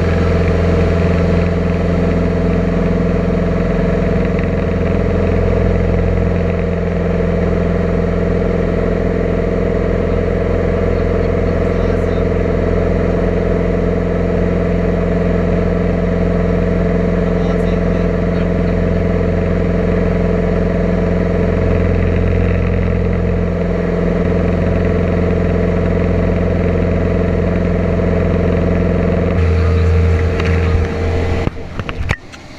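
Steady drone of a Bulldog light aircraft's piston engine and propeller, heard from inside the cockpit in flight; the note shifts slightly a couple of times and changes near the end.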